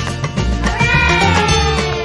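Cheerful background music, with one long cat meow starting about halfway through and falling slowly in pitch.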